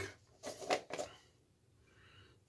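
A plastic shave soap tub being handled: a few short scrapes and knocks in the first second, then a faint sniff near the end as the soap is smelled.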